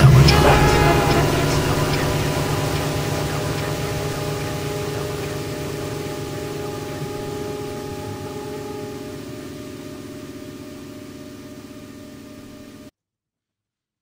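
Electroacoustic drone from a piece for saxophone, tape and live electronics: several held low tones layered over a hiss, fading slowly and evenly, then cutting off suddenly to silence about a second before the end.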